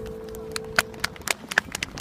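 The last held note of a live orchestra, amplified outdoors, fades away. It is overlaid by a series of scattered sharp clicks.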